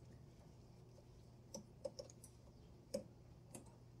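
Faint, sparse clicks of a screwdriver working a terminal screw on a minisplit's wiring terminal block, about five small ticks over the second half.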